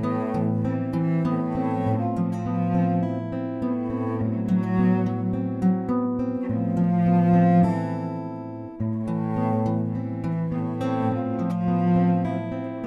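Bowed cello holding long, low sustained notes under a steady rhythm of picked and strummed acoustic guitar: the instrumental opening of a folk song, with no singing yet.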